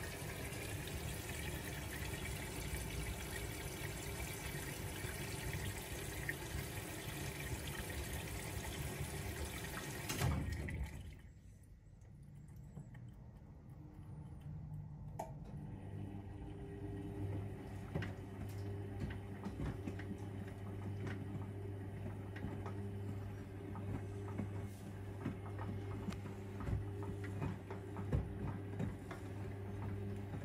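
AEG Öko Lavamat 6955 washing machine drawing water in through its detergent drawer to flush in the main wash powder, a steady rush of water that stops abruptly about ten seconds in as the inlet valve shuts. A few seconds later the drum motor starts tumbling the wet load slowly, with a steady low hum and scattered light knocks.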